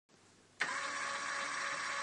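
Electric motor of a Brig-Ayd wheelchair crane switching on with a click about half a second in, then running steadily as it begins to lift a folded wheelchair.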